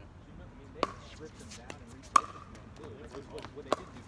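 Pickleball paddles hitting the plastic ball during a rally: three sharp pops with a short ring, about a second and a half apart, the middle one the loudest.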